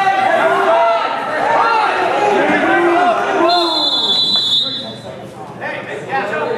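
Coaches and spectators shouting over a wrestling bout, overlapping yells in a gym. About three and a half seconds in, a referee's whistle sounds one steady note for about a second.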